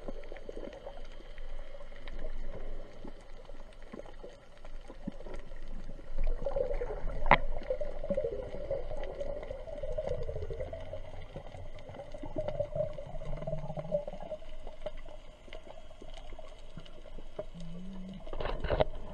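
Muffled underwater sound picked up through an action camera's waterproof housing: a steady wash of water movement with a low wavering hum, and a single sharp click about seven seconds in.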